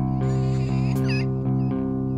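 Alternative metal band playing: sustained guitar and bass chords that shift about a second in, with short high, wavering, looping sounds laid over them twice.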